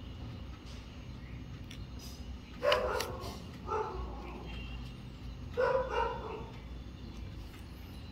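A dog barking three times in short barks, about a second apart and then two seconds later, over a faint steady background hum.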